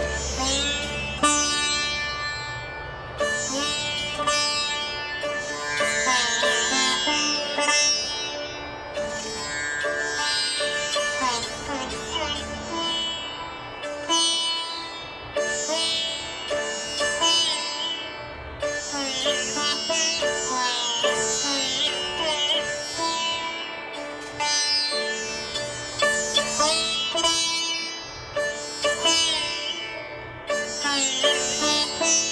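Sitar playing a raga: a continuous run of plucked notes with sliding pitch bends, over the steady ringing of its drone and sympathetic strings.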